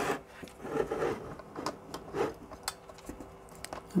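Light handling sounds: faint rubbing and a few small clicks as a 3D-printed plastic lamp case is turned in the hands and a small cable plug is pushed into it.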